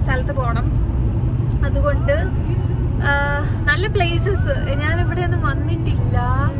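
Steady low road and engine rumble of a car driving, heard inside the cabin under a woman's talking.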